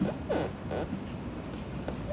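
A brief, soft hum from a voice about half a second in, then quiet room tone with a faint steady high-pitched whine.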